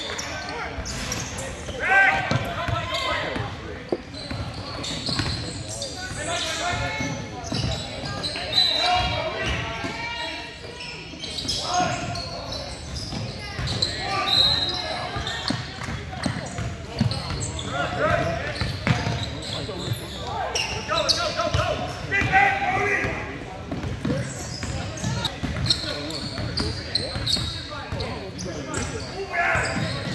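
Basketball game sounds in a large gym: a ball dribbling on the hardwood floor among indistinct calls and shouts from players and spectators.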